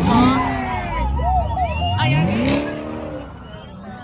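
A car doing a burnout: the engine revs up twice, with wavering tyre squeal in between, the noise dying away near the end.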